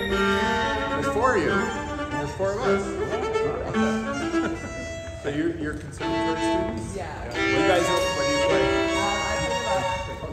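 A string quartet playing, with the violins to the fore.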